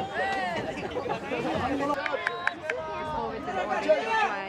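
Spectators chattering, several voices overlapping, with a few short sharp knocks in the middle.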